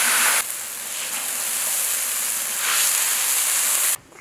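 Large wok hissing and sizzling with steam just after liquid is poured into it. The steady hiss eases slightly about half a second in.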